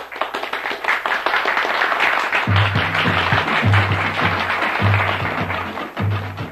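Audience applause in an auditorium, with band music coming in under it about two and a half seconds in: a deep bass note repeating a little under once a second.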